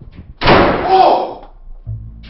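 A door slammed shut, loud and sudden, about half a second in.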